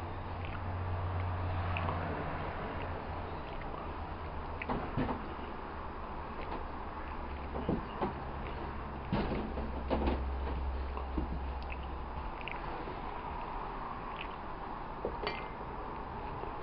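A steady low hum with a handful of light knocks and clicks scattered through it: handling noise as a handheld camera moves over steel parts in a shop.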